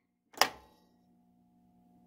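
Pinball flipper assembly actuating once: a single sharp mechanical clack as the solenoid plunger pulls in and the flipper mechanism strikes its end-of-stroke switch, followed by a faint steady hum.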